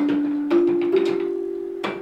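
Practice carillon console: baton keys striking its metal tone bars. Four notes sound, each starting with a sharp click and ringing on over the next, the tune stepping upward in pitch.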